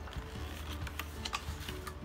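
A page of a picture book being turned: a handful of light paper crackles and small clicks spread over a couple of seconds.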